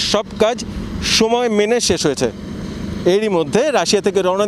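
A man speaking Bengali in a piece to camera, over a steady background hum.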